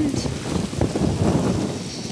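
Wind buffeting the microphone: a gusty low rumble that swells and dips.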